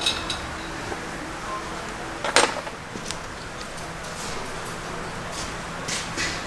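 Light metallic clicks and clinks of parts and tools being handled in a vehicle's engine bay, with one sharper knock about two and a half seconds in, over a steady workshop background.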